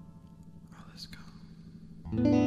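A brief whisper about a second in, over the faint fading tail of a held musical chord.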